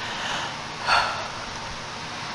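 Air conditioner running with a steady, big hiss, like a rocket ship about to take off. A short breath comes through about a second in.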